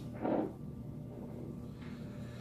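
Quiet room with a low steady hum, and one short puff of breath about a quarter of a second in.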